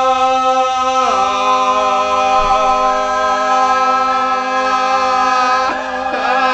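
Several men's voices holding long sung notes together as a vocal warm-up, an unaccompanied drone chord. About a second in one voice slides down to a lower note, and the chord breaks off briefly and re-enters near the end.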